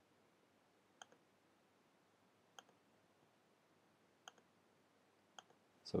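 Faint computer mouse clicks, four in all spaced a second or more apart, each a sharp click with a softer one just after it (button press and release), over near-silent room tone.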